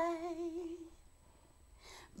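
A woman singing a cappella holds the last note of a line with a slight wavering in pitch, fading out about a second in. After a short pause there is a faint breath in near the end.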